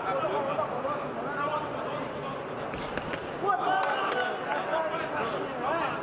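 Men's voices shouting and calling out in an arena hall during an amateur boxing bout, overlapping and busiest about halfway through, with a few sharp knocks from the ring.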